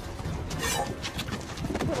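A woman's short, high cry falling in pitch as she is seized and struggles, followed by a few scuffling knocks.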